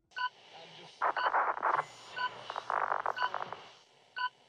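Countdown sound effect: a short electronic beep once a second, four times, with bursts of crackling radio-style static between the beeps.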